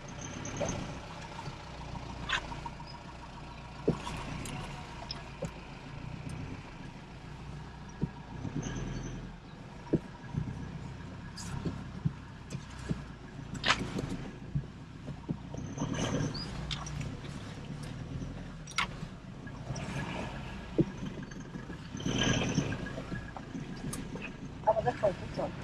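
Inside the cab of a Toyota Hilux moving slowly over a rough, rocky dirt track: a low, steady engine and road rumble, broken by many short, sharp knocks and rattles as the vehicle jolts over the stones.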